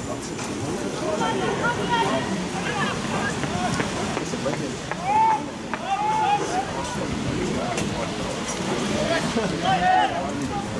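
Several voices talking over one another near the microphone, with a few louder calls about five and six seconds in.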